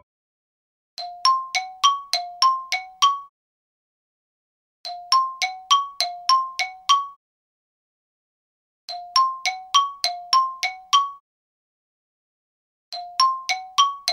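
A two-note chime rings in repeating bursts. Each burst is about eight quick bell-like dings alternating between a lower and a higher note and lasts about two seconds. It comes four times, once every four seconds, with silence in between.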